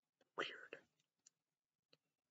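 Speech only: a man says one word, then near silence with two faint short clicks.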